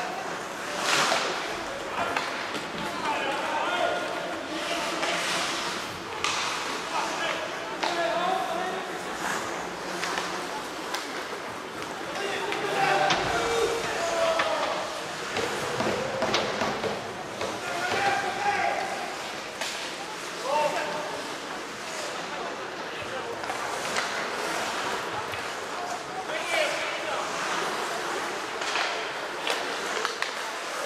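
Ice hockey game in a large, near-empty arena: scattered shouts from players and people at the rink, with sharp clacks of sticks and puck and thuds against the boards, echoing in the hall.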